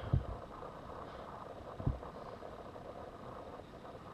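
Quiet steady background hum of room tone, with two soft knocks: one just after the start and a louder one a little under two seconds in.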